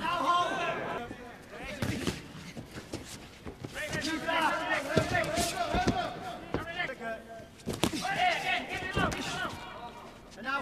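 Kickboxing bout: several sharp thuds of kicks and punches landing, one of them about eight seconds in as a low kick goes in, under a man's raised, excited commentary voice.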